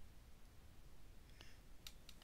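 Near silence: room tone, with a few faint clicks in the second half.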